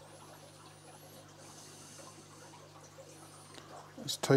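Quiet room with a steady low hum and the faint rustle of stranded wire ends being twisted together between fingers. Two faint, thin, wavering high squeaks sound over it: one lasting about a second near the start, and a shorter one near the end.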